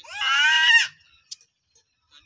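A single loud, high-pitched cry lasting just under a second, rising slightly in pitch at the start and wavering as it is held.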